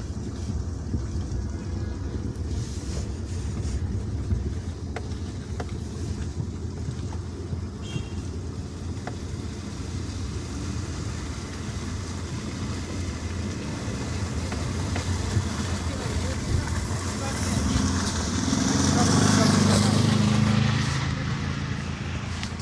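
Steady low rumble of a car's engine and tyres on a snowy road, heard inside the cabin. Near the end a louder engine drone swells for about three seconds and fades as a quad bike passes close by.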